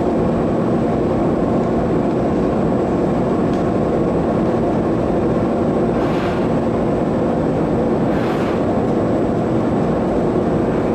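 Gas-fired glory hole burner and hot-shop fans running, a steady rushing noise with a constant low hum under it, while glass is reheated in the furnace mouth. Two faint brief hisses come about six and eight seconds in.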